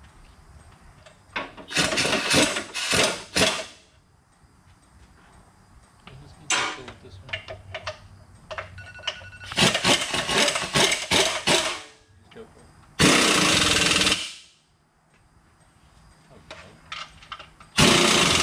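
Impact wrench hammering in several short bursts, with a steadier run of the tool near the end, while bolting the 4L80E transmission up to the engine.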